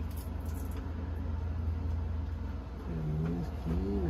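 A steady low mechanical hum, like a heater or motor running in the room. Near the end a short wordless voice sound comes twice, like someone humming.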